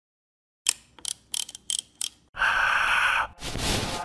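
Intro sound effects of a DJ mix: five sharp ticks about a third of a second apart, then about a second of steady buzzing noise that cuts off abruptly, then a rising whoosh.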